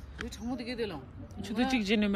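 Speech: a voice talking in short phrases, with a brief pause in the middle.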